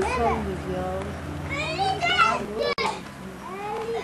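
Children's voices calling and chattering, high-pitched, over a low steady hum, with a brief cut-out in the sound a little under three seconds in.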